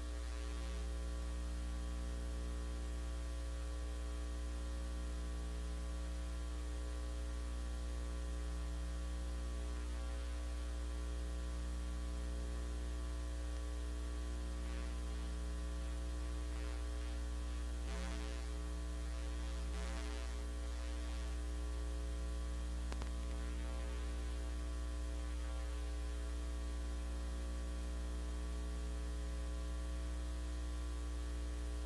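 Steady electrical mains hum with a dense stack of overtones, unchanging throughout, picked up in the chamber's sound feed while the microphones are open and nobody speaks.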